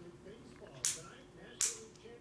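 Two sharp snaps about three quarters of a second apart, the first about a second in, part of a steady series at an even pace, over a faint murmur.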